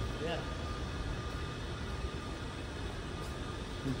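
Steady background noise of a large maintenance hangar: an even low rumble and hiss with a faint steady hum, as from ventilation and shop machinery.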